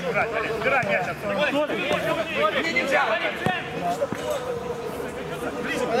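Several men's voices talking and calling out over one another, the shouts of a football match in play, with a brief knock about three and a half seconds in.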